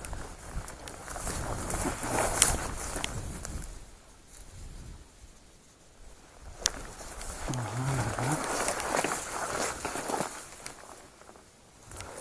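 Footsteps and clothing brushing through dense dry grass and bare bushes: two long stretches of rustling with a few sharp twig snaps.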